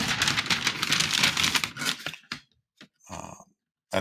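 Brown kraft packing paper crinkling and rustling inside a cardboard shipping box as it is unpacked: a dense, crackly rustle for about two seconds, then a short click and a brief rustle with pauses between.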